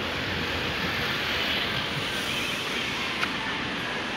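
Steady rushing noise of city road traffic at a crossroads, with a single small click just after three seconds.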